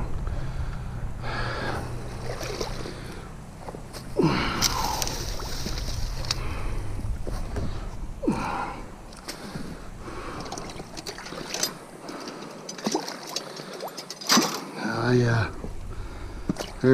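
A man's gasps and grunts of effort every few seconds while pulling a beaver trap set out of the mud and water, with sloshing water and small clicks and knocks of stakes and gear between them.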